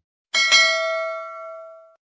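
A single bell-like chime sound effect: one bright ding about a third of a second in, ringing with several steady tones that fade away over about a second and a half.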